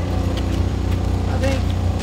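A steady low motor drone, like an engine or generator running, with faint voices over it.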